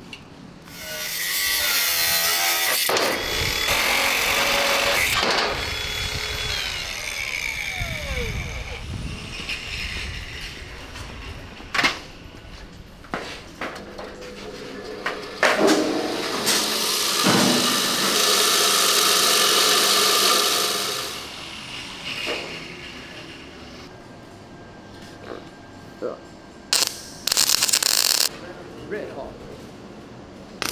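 Metalworking in a workshop: power tools grinding steel in several stretches, the longest a bench belt grinder running for several seconds in the middle, with short sharp knocks between. Near the end come short spurts of welding.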